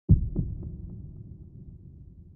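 A sudden deep boom, followed by three fading echoes about a quarter second apart and a low rumble that dies away.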